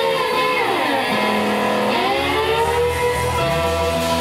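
Live blues-rock band playing with electric guitars and bass guitar. A guitar part glides down in pitch, holds, and glides back up about two seconds in.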